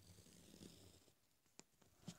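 Near silence, with faint scratching of a graphite pencil drawing a curve on paper, and a small tick near the end.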